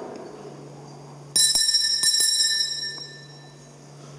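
Altar bell rung at the consecration, with a few quick strikes about a second in, then ringing tones that slowly fade.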